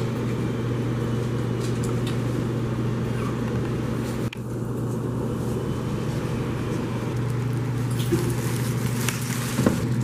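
A steady low mechanical hum with a rumbling noise under it, dipping briefly about four seconds in.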